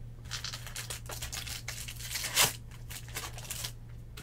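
Foil trading-card pack wrapper being torn open and crinkled in the hands: a run of crinkling rips, with one sharp, louder tear about two and a half seconds in.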